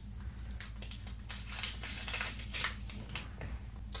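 Paper envelope being opened by hand, with a run of short, irregular tearing and rustling sounds of paper as the card is pulled out.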